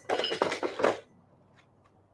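Metal dumbbells clinking and rattling for about a second as they are handled and lifted off the floor, then a few faint clicks.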